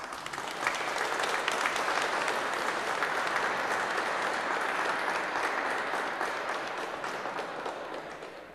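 Audience applauding, a dense patter of many hands that builds within the first moments, holds steady, and fades out toward the end.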